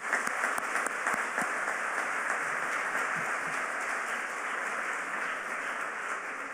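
Audience applause: many hands clapping in a steady dense patter that eases off slightly near the end.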